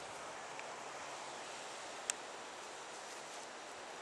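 Quiet outdoor ambience: a faint steady hiss, with a single short sharp click about two seconds in.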